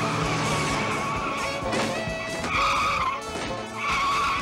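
Car tyres squealing as the car is thrown hard around a corner, over chase music; the squeal is loudest about two and a half seconds in and comes back near the end.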